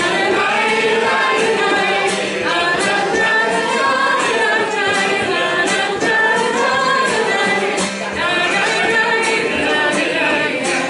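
A live folk song: a woman's voice with many voices singing along, over a steady beat on a large hand-held frame drum.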